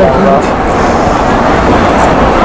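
Quran recitation by a young male reciter through a microphone and PA: a sung phrase ends about half a second in. The rest is a pause filled with steady hall noise and low rumble.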